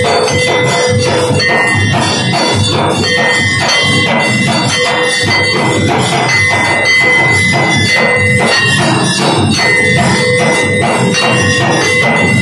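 Brass temple bell rung continuously by hand during an aarti, its ringing tone held throughout over a fast, even rhythm of metallic strokes.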